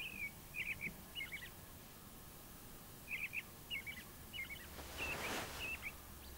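Faint bird chirping: short, quick chirps in two runs, a few in the first second and a half and about five more from three seconds on. A soft rustle comes near the end.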